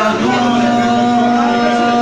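A man singing one long held note into a microphone, the pitch steady for about two seconds.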